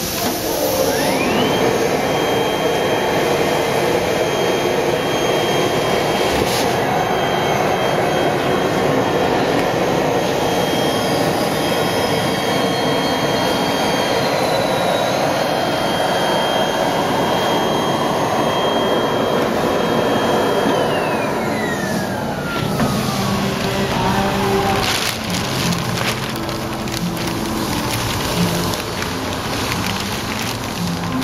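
Vacuum powder conveyor drawing PVB resin powder up a suction hose. Its motor whines up in pitch over about a second and runs steadily with a rushing noise for about twenty seconds. Then it winds down in a falling whine, followed by light knocks and rattles.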